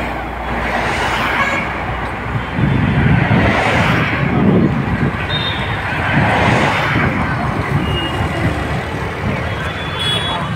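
Busy road traffic: engine and tyre noise from buses, trucks, cars and motorcycles passing close by, swelling and fading several times as vehicles go past.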